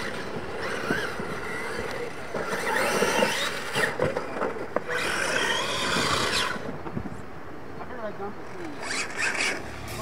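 Losi LMT electric RC monster trucks racing on dirt, their brushless motors whining up and down in pitch as the throttle is worked, over a rough noise from the tires and chassis on the track.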